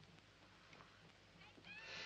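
Near silence: a quiet soundtrack hiss. In the last half second, faint, high, short chirping calls begin, each rising quickly in pitch.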